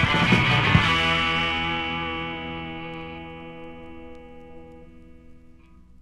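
Closing bars of a rock song: a few last drum hits in the first second, then a guitar chord left ringing and slowly fading out.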